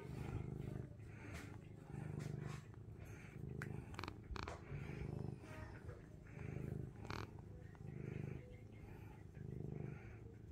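Domestic cat purring contentedly while being scratched under the chin, the purr swelling and easing with each breath, roughly once a second. A few brief clicks come in the middle.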